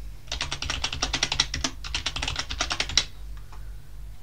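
Typing on a computer keyboard: a quick run of keystrokes as a password is entered and then repeated, stopping about three seconds in.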